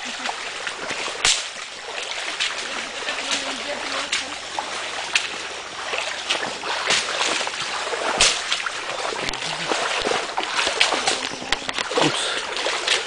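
Footsteps wading through shallow water and mud, with irregular splashes and sloshes from several walkers.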